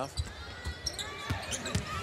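Basketball bouncing on a hardwood court, several thumps about half a second apart, over faint arena crowd voices.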